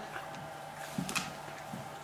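Quiet room tone with a few faint clicks about a second in, from a small dog, a Cairn terrier, moving about on a hardwood floor.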